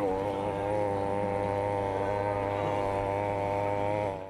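A man's voice holding one long, low sung note, steady in pitch throughout.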